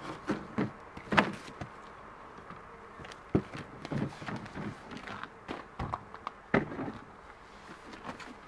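A Husky plastic rolling toolbox knocking and thumping as it is lifted and pushed into the back seat of a pickup truck's cab: about half a dozen separate knocks spread across several seconds.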